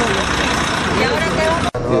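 People talking over the steady running noise of a bus engine, with the sound cutting out for an instant near the end.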